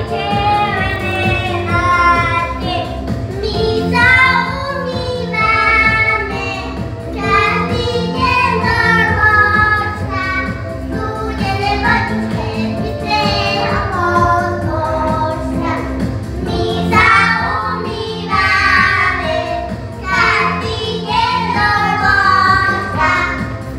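Young children singing a song together with instrumental accompaniment that has a steady bass beat.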